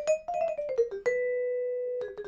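Musser M55 vibraphone's aluminum bars played with yarn mallets: a quick run of short notes that climbs and then steps down, played with flutter pedaling so each note rings only a little. About a second in, one note is left ringing steadily.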